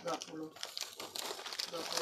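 Plastic snack wrappers and a thin plastic bag crinkling and rustling as they are handled, a steady patter of small crackles, with a quiet voice under it.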